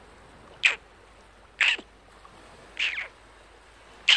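Three short, high animal calls, each falling in pitch, about a second apart, over a faint steady hiss.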